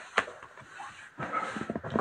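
A tarot card laid down on a cloth-covered table with a single sharp click about a fifth of a second in, followed by light card handling. Near the end comes a short thin whine.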